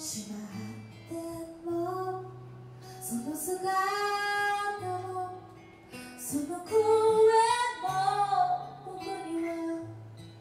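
A woman singing a slow acoustic ballad into a microphone, accompanied by acoustic guitar.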